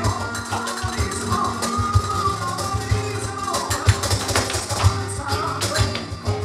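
Live flamenco music: guitar playing with a run of sharp percussive strikes, denser in the second half, and a wavering melodic line about a second in.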